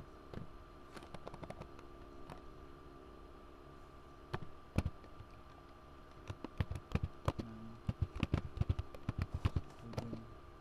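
Computer keyboard typing: a few scattered keystrokes, then a quick run of keystrokes in the second half. A faint steady hum lies underneath.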